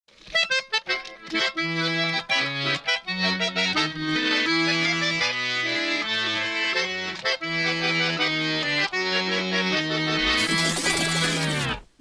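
Accordion playing a fast Balkan pop-folk melody, quick runs of notes over held bass notes. A whooshing swell builds near the end and cuts off suddenly.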